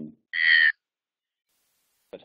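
A man's voice over a webinar call trailing off the end of an 'um', then a short, loud hiss about half a second in, like a sharp breath or an 's' sound, followed by over a second of dead silence.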